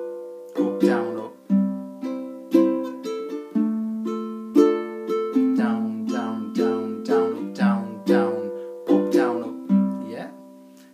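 Low-G tuned ukulele strummed in a steady rhythm of down and up strums, the chords changing every few strums.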